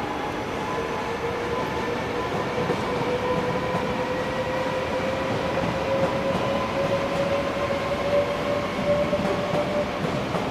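NS VIRM double-deck electric intercity train pulling away, its traction motors giving a whine that climbs slowly in pitch as it gathers speed, over the rumble of its wheels on the rails.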